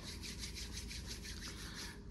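Hands rubbing briskly together, a dry skin-on-skin swishing in rapid even back-and-forth strokes.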